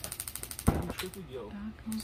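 The electronic spark igniter of a propane fire table clicking rapidly, about a dozen clicks a second, with one louder click near the middle. The clicking stops after about a second. The gas is flowing and the burner has not yet caught.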